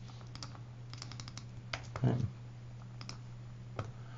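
Computer keyboard keystrokes and mouse clicks, scattered, with a quick run of keystrokes about a second in, over a low steady hum.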